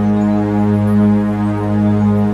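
Meditation music: a steady drone on G sharp at 207.36 Hz, with a strong octave below it and a row of overtones, swelling gently in level.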